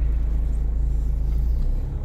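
Steady low rumble of a car on the move: engine and road noise.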